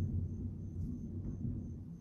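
Low, steady room rumble with no distinct event.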